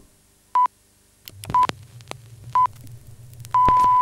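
Radio time-signal pips: three short beeps of one steady pitch, about a second apart, then a longer beep at the same pitch near the end. A low rumble sits under the middle beeps.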